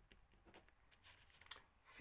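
Near silence, with faint scratching of a pencil writing on paper and a single sharper click about one and a half seconds in.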